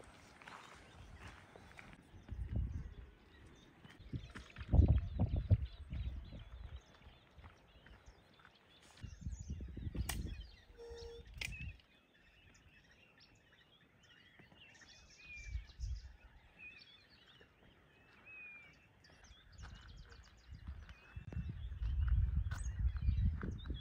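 Small birds chirping in the scrub, with bursts of rustling and low thumps from someone moving through the bushes, mostly in the first half. A single sharp click about ten seconds in.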